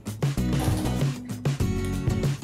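Background music: a steady beat with strummed guitar.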